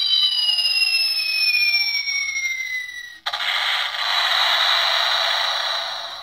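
Handheld electronic sound-effects box playing a bomb-drop effect: a whistle sliding down in pitch with a second tone rising against it for about three seconds, then a sudden harsh explosion hiss. The sound is thin and tinny, with no low end, from the box's small speaker.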